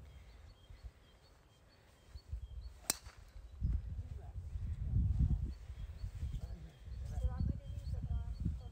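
A single sharp crack about three seconds in: a golf club driving a ball off the tee. After it comes an uneven low rumble, with faint high chirps throughout.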